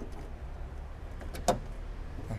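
A single sharp click about one and a half seconds in, with a faint tick just before it, as the bonnet prop rod of a Toyota Hilux Revo is unhooked and snapped into its clip, over a low steady hum.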